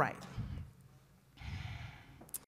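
A woman's breathing at a close microphone after the word "right": a short breath just after the word, then a longer, breathy one about a second and a half in.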